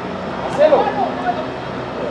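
A distant voice shouts briefly on the football pitch about half a second in, over a steady background hum of outdoor noise.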